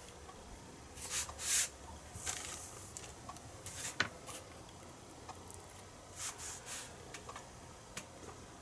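Faint handling noises as a soldering iron, solder wire and a hook-up wire are picked up and moved: a few short soft rustles and one sharp click about halfway through.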